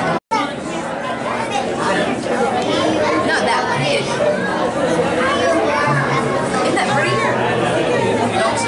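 Indistinct chatter of many people talking at once. The sound drops out completely for a moment a fraction of a second in.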